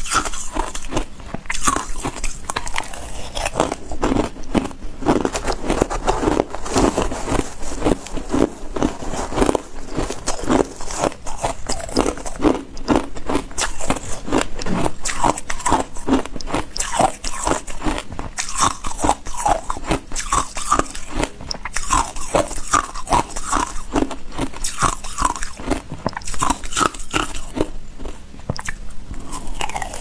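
A person biting and chewing ice: a continuous run of loud, crackling crunches as the ice breaks between the teeth.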